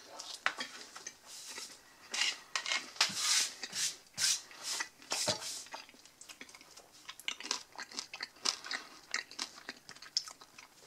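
Close-up chewing of a mouthful of crusty baguette with creamy meat salad: crunching of the crust in quick bursts, densest in the first half and thinning to softer chewing clicks later.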